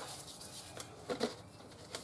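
Faint rustling and handling of a plastic bucket lid by gloved hands, with one short, slightly louder sound about a second in.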